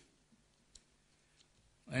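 Near silence with a few faint, short clicks, then a man's voice resumes near the end.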